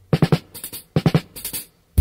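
Drum-kit intro to a reggae song: short clusters of separate drum strikes with gaps between them, before the band comes in.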